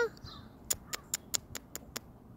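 A quick, even run of seven sharp clicks, about five a second, starting about a third of the way in.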